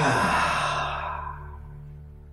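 A man's long, breathy sigh out through the mouth, starting loud and fading away over about a second and a half, over a soft steady drone of background music.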